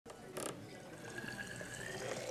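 Whiskey running from a wooden barrel's tap into a glass bottle, the note of the filling bottle rising as it fills. There is a brief knock about half a second in.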